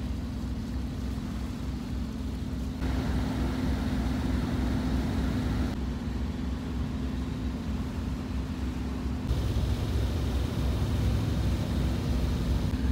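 A sailboat's auxiliary engine running steadily while motoring, a low drone under wind and water rush. The mix changes abruptly about three seconds in and twice more later.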